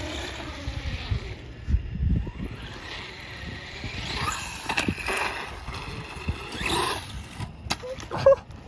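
Electric RC truck's brushless motor whining and rising in pitch twice as the truck accelerates over concrete, with low rumbling of wind on the microphone and a sharp click near the end.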